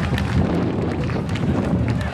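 Spectators applauding with scattered claps, under a steady low rumble of wind buffeting the microphone.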